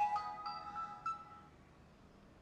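South N6+ series total station playing its electronic power-on tune, a ringtone-like run of beeping notes, as it boots up. The tune fades out about a second and a half in.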